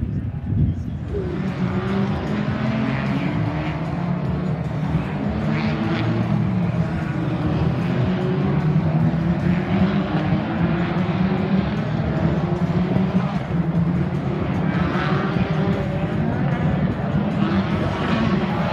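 A pack of British Touring Cars racing past, their 2.0-litre turbocharged four-cylinder engines running at high revs. Several engine notes overlap, rising and falling in pitch as the cars come through.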